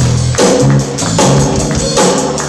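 Live band playing: a low bass line of held notes over drum-kit and cymbal hits.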